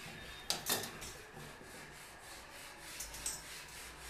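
Hand-operated supply valve inside the plastic frame of a concealed wall-mounted flush tank being turned open: two quick sharp clicks about half a second in, then faint handling rubs and ticks.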